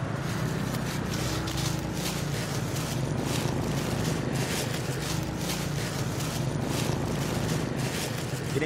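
Small motor scooter's engine running steadily while riding along a road, with road and wind noise.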